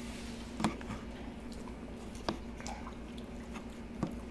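Quiet chewing of a mouthful of pizza, with two sharp clicks, one just over half a second in and one past two seconds, over a steady low hum.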